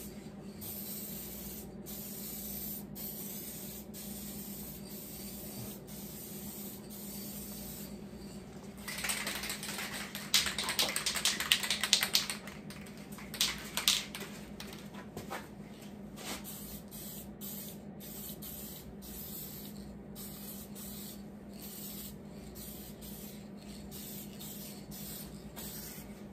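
Aerosol rattle can of spray paint hissing in bursts as paint goes onto a truck fender. The longest, loudest spray comes about nine to twelve seconds in, with a few shorter bursts after, over a steady low hum.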